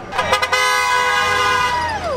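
Vehicle horn honking: a few quick short toots, then one long blast of about a second and a half whose pitch drops away at the end.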